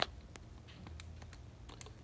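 A few faint, scattered clicks over low, steady room noise with a slight hum.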